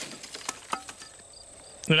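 A wooden board being lifted and turned over, with two sharp knocks about half a second in. Behind it an insect chirps faintly and steadily, about three short high chirps a second.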